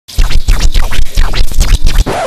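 Dish brush scrubbing hard and fast on a ceramic plate in a steel sink, a loud run of back-and-forth scratching strokes at about five a second.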